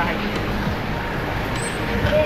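Steady mechanical background noise with a faint low hum, like machinery running; a short faint high tone sounds near the end.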